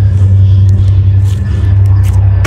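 A loud, steady low rumbling drone, likely an added dramatic background music bed.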